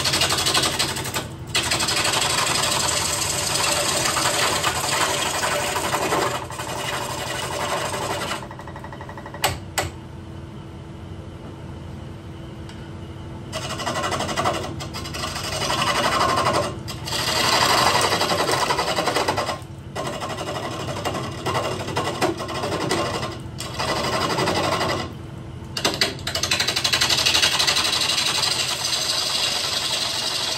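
Turning gouge cutting into a walnut blank spinning on a wood lathe: rough, scraping cuts in stretches of several seconds over the steady hum of the lathe motor. The cutting stops for about five seconds near the middle, and twice more briefly later on, leaving only the motor hum.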